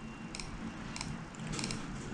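Faint clicking from a laptop's controls as a web page is scrolled: about four small, irregularly spaced groups of sharp clicks.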